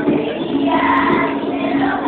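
A class of schoolchildren singing a Venezuelan Christmas song together in chorus.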